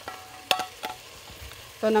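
Onions and tomatoes frying in a pot with a faint sizzle, and two sharp clicks about a third of a second apart as a salt container's lid is handled.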